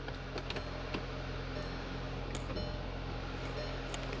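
A 2017 Volkswagen CC's turbocharged 2.0-litre four-cylinder idling steadily, heard from inside the cabin, with a few light clicks in the first second.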